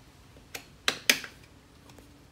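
Hard plastic clicks from a transducer mount bracket being worked into place by hand: three sharp clicks, the last two close together.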